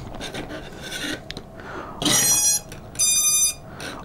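FPV quadcopter's electronics giving two short, high, clean beeps about a second apart, about two seconds in, as it powers up on a freshly connected battery. Light handling noise from the quad being held comes before the beeps.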